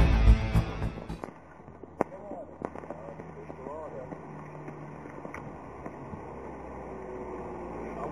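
Title music ends about a second in. After that there are a few scattered sharp pops and crackles from a small burning ground firework, a heksenkring, over a faint low hum.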